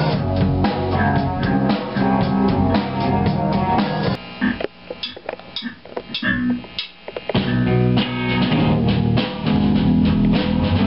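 Loud live rock band: electric guitar and drum kit playing hard. About four seconds in, the music drops away to a few sparse hits for roughly three seconds, then the full band comes back in.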